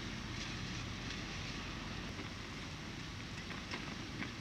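Steady low background noise with a faint low hum and a few faint ticks.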